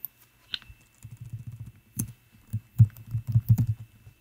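Typing on a computer keyboard: a quick run of irregular keystrokes as a word is deleted and retyped.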